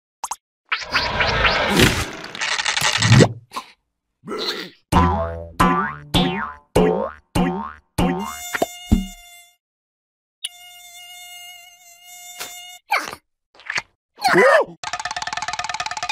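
Cartoon mosquito buzzing: a run of short falling slides, then a high, steady whine held for about two seconds, then a faster pulsing buzz near the end.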